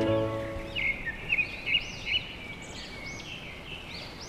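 Background music fading out in the first half-second, then birds chirping in quick, repeated, overlapping calls over faint outdoor background noise.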